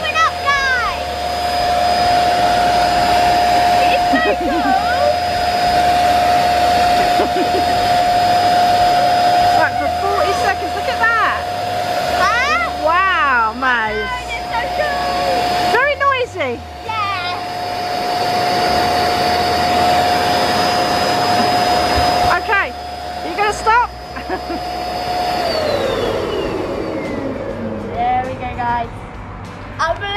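Zuru Bunch O Balloons electric Party Pump running with a steady, noisy whine while it inflates a stem of eight self-sealing balloons. About 25 seconds in the motor switches off and its pitch slides down as it winds to a stop. Excited voices exclaim over it at times.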